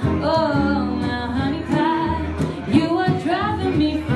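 A woman singing live with a small acoustic band of two acoustic guitars and an upright double bass, her sustained notes wavering with vibrato.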